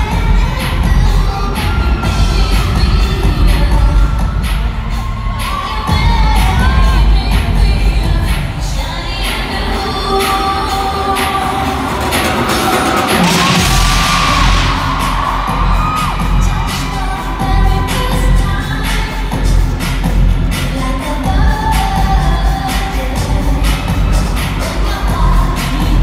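Live pop music with singing and heavy bass over an arena PA, heard from the audience. About thirteen seconds in the bass drops out briefly, then stage CO2 jets fire with a loud hiss lasting a second or two before the music carries on.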